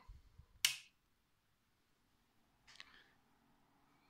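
A single sharp click of the cloud chamber's power switch being flipped on. A faint brief rustle follows about two seconds later.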